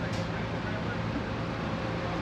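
Steady outdoor background noise with an even low hum, like a distant engine running, and no sudden sounds.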